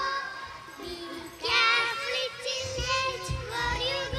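A small group of young girls singing a children's action song together into stage microphones, with a louder sung phrase starting about a second and a half in.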